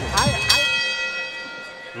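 Boxing ring bell struck near the start, its tone ringing out and fading away.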